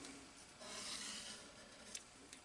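Faint rubbing and rustling of hands on paper and a kraft envelope, a little louder for about a second in the middle.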